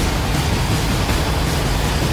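A loud, steady rushing whoosh over a low rumble, the swoosh effect of a TV news programme's animated title sequence.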